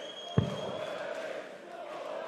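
A steel-tip dart striking a Winmau bristle dartboard once, a single short thud about half a second in, over a steady crowd murmur.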